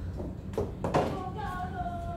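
Two knocks about half a second apart, then a brief high, slightly falling voice-like sound, over a steady low hum.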